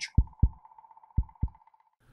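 Transition sound effect: two pairs of low thuds like a heartbeat, the pairs about a second apart, over a faint steady tone that stops just before the end.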